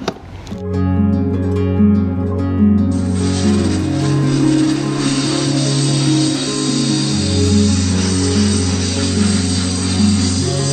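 Background guitar music starts about half a second in. From about three seconds in, a steady hiss lies under it: the water jet of an INGCO 2000 W electric pressure washer spraying.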